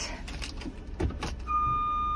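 Van's reversing backup alarm coming on about one and a half seconds in, a steady high beep, after the gear lever is moved into reverse. It is preceded by a few clicks and knocks from the shifter and its plastic cover.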